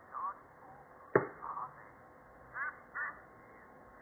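Cartoon pig snorts and short bits of a cartoon voice, played from a screen's speaker and picked up thin and muffled, with a sharp click about a second in.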